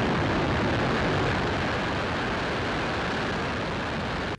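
Falcon 9 rocket's nine Merlin first-stage engines firing at liftoff: a steady, dense rumble that eases slightly in level toward the end.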